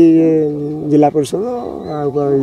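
A man speaking in Odia into the microphones, with some long, drawn-out syllables.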